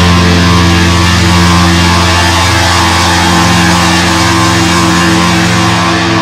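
Live heavy metal band playing, with distorted electric guitars holding a steady low chord.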